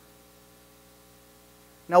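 Faint, steady electrical mains hum, a set of unchanging tones, heard in a pause between sentences of speech.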